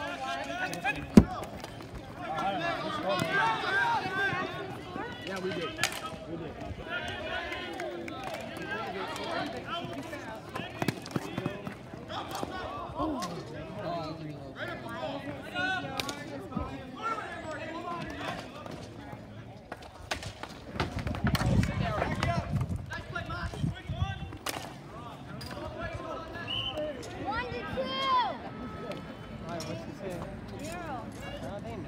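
Ball hockey play: sticks clacking and the ball knocking against sticks and boards, with one loud sharp crack about a second in, under indistinct shouting from players and spectators. A low rumble rises for a couple of seconds past the two-thirds mark.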